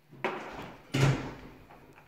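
Two sharp bangs about three quarters of a second apart, the second louder, each trailing off over about half a second.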